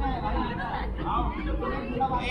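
Several people's voices chattering at once, with no single clear speaker, over a steady low rumble.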